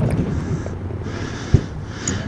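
Low rumble of go-kart engines idling in the pit lane, fading slightly, with one sharp knock about one and a half seconds in.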